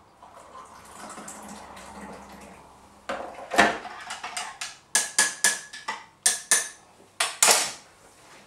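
Hot water poured from an electric kettle into a coffee mug, a soft rushing for about three seconds. Then a run of about ten sharp clinks and knocks: the kettle set back down, and a spoon clinking against the mug as the coffee is stirred, some strikes ringing.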